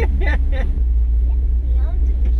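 Deep steady engine drone of a lifted Chevy square body's swapped 6.0-litre LS V8, heard from inside the cab with a thin steady hum over it. A voice speaks briefly at the start.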